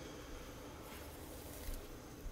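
Faint, soft noise as borax powder is poured slowly from a ceramic bowl into a pot of hot water, with a light tap about a second in and another near the end.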